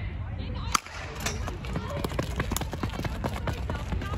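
One sharp crack of a starting clapper about a second in, then a rapid patter of sprinting footsteps on the synthetic track, over a low rumble of wind on the microphone.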